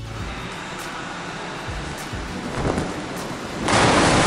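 A steady rushing noise, then about three and a half seconds in a sudden, much louder rush as a diver with a fabric parachute hits the pool water: a splash.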